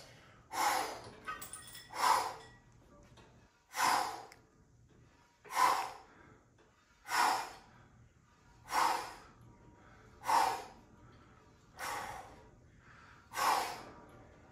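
A man's forceful breaths in time with chest press reps, about nine hard puffs, roughly one every second and a half.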